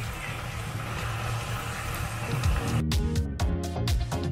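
Mushrooms and bacon sizzling as they fry in pans. About two and a half seconds in, background dance music with a steady beat and bass line comes in over it and becomes the loudest sound.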